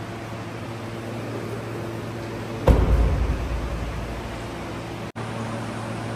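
Steady indoor machine hum with a few faint low steady tones, typical of air conditioning or ventilation. About two and a half seconds in, a sudden low thump dies away over a second or so.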